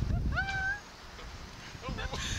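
A rider's short, high-pitched cry that rises and then holds for about half a second, over a rumble of wind on the microphone; a second cry starts near the end.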